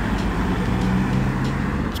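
Cars driving past close by: a steady low engine hum over tyre and road noise.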